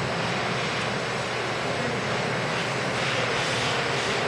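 Steady, even background din of a large, crowded indoor hall, with no distinct events standing out.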